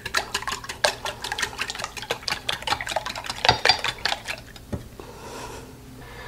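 Wire whisk beating eggs and milk in a glass measuring cup: quick, irregular clicking and tapping of the wires against the glass, stopping near the end.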